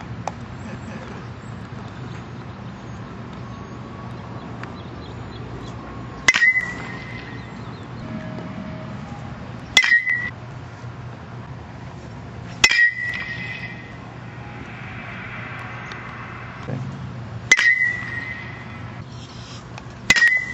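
Metal baseball bat hitting pitched balls: four sharp pings, each with a short ring, a few seconds apart.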